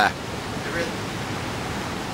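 Steady rush of ocean surf, an even noise without rhythm or pitch.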